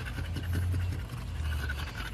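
Micro bully dogs' claws scuffing and scratching on wooden deck boards as they move about, over a low steady rumble.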